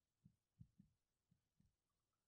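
Near silence: room tone with a few very faint low knocks.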